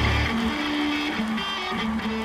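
Live rock music: the bass and drums stop a moment in, leaving an electric guitar playing a few sustained single notes on its own.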